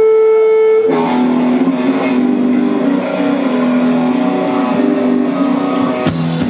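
Amplified electric guitar playing a song intro live on stage: a single held note gives way about a second in to a lower note that rings on, sustained and steady, without drums.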